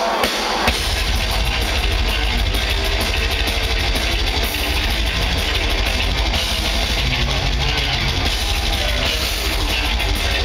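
Death metal band playing live through a festival PA: distorted guitars, bass and fast drumming. The full band kicks in under a second in.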